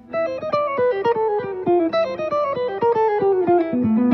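Clean electric guitar, a headless solid-body, playing a fast single-note warm-up line: a repeating five-note figure stepped down across the strings, mixing picked and legato notes, so the run falls steadily in pitch. It ends on low notes plucked with the pick and the middle and ring fingers (hybrid picking).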